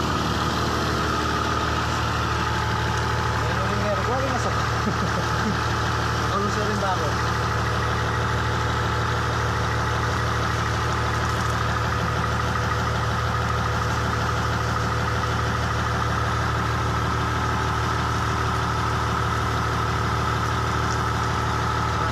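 Diesel engine of a Hitachi EX200 excavator idling steadily.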